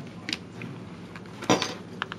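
Handmade paper mini album being handled: pages and flaps turned, with a short sharp knock about one and a half seconds in and a smaller one near the start.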